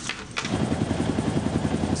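Aircraft engine noise heard from on board during a low overflight: a loud, steady run with a fast, even pulsing, starting abruptly.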